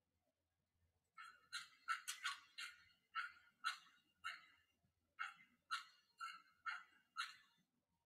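A dog barking: about a dozen short, sharp barks, roughly two a second, starting about a second in.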